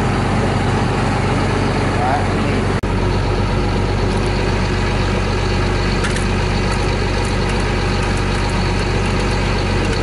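Diesel engine of a Tigercat 635D skidder idling steadily, with a brief dropout about three seconds in.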